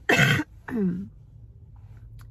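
A woman clears her throat once, a short rough rasp, followed by a brief falling hum from her voice.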